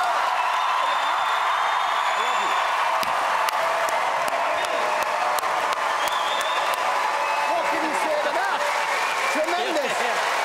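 Large theatre audience applauding steadily, with cheering voices mixed into the clapping.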